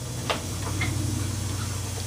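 A handheld radio handled as its volume knob is set: a sharp click about a third of a second in, then a low buzz with a fast, even ticking.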